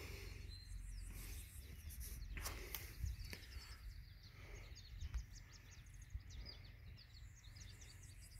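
Faint outdoor background with small birds singing: many quick, high chirps repeating over a low rumble, with a few soft clicks.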